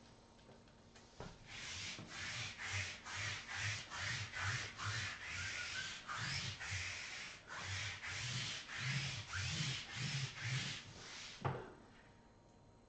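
Lint roller rolled back and forth over a cloth table covering, a rasping stroke about three times a second for some ten seconds. It ends with a sharp knock.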